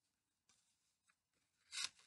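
Near silence, then one short rustle near the end: yarn and hands rubbing against a cardboard loom as the weft is handled.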